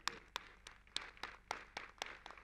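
Faint, sparse audience applause: scattered hand claps, about ten irregular claps over two seconds.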